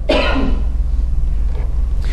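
A man's single cough, a short rough burst at the start, fading into a pause. A steady low hum from the recording runs underneath.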